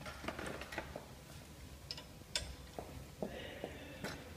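Faint, scattered clicks and light taps of hands handling the cutter assembly of a vertical form-fill-seal packing machine. There is a quick cluster in the first second, a few single sharp ticks later, and a brief rustle near the end.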